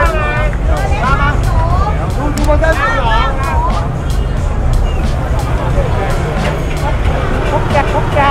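Busy street crowd: many people's voices talking and calling out over a steady low rumble of motor scooter engines moving slowly through the crowd.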